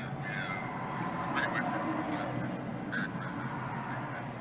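A faint, muffled voice in short phrases over a steady low hum.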